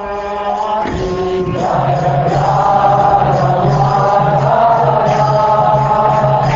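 Devotional mantra chanting by a group of voices over a steady drone, swelling and growing fuller over the first two seconds.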